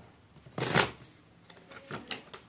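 Tarot cards being shuffled by hand: one short rush of cards about half a second in, followed by a few light card clicks near the end.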